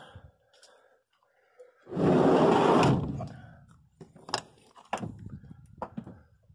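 A rushing scrape lasting about a second, then three sharp knocks, from someone moving about inside the cabin of a 1971 VW bay-window bus.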